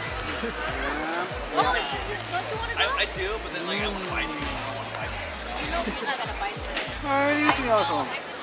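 Background music with a steady bass line, with scattered voices underneath.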